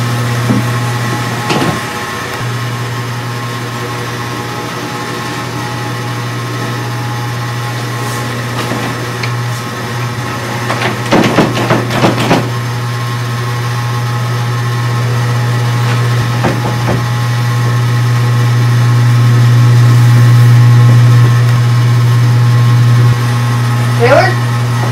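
A loud, steady low hum that never stops, swelling louder for a few seconds later on: the annoying noise that keeps going even though the power is off. A short cluster of quick clicks or knocks comes about eleven seconds in.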